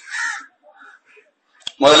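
A bird cawing: a few short, harsh calls in quick succession, the first the loudest and the rest fading. A man starts speaking near the end.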